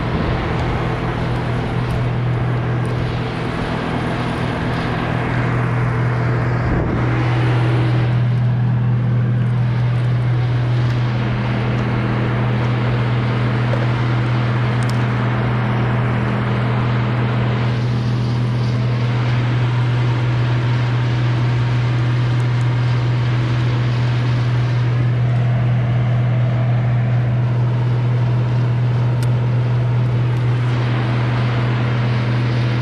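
Gas chainsaw running steadily at high speed while cutting through a large oak trunk, with an even, unbroken engine note.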